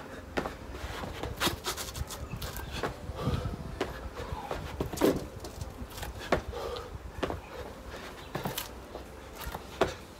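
A person doing burpees: feet and hands landing on a mat over hard paving in irregular thumps about once a second, with heavy breathing between them.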